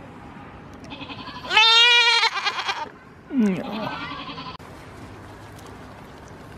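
Goat bleating twice: a loud, wavering bleat about a second and a half in, then a second, shorter bleat that glides in pitch.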